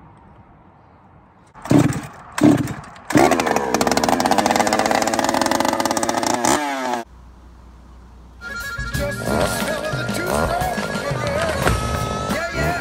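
Gas chainsaw: two short bursts of revving, then about four seconds held at high revs, its pitch sliding down before it stops abruptly. Music follows in the last few seconds.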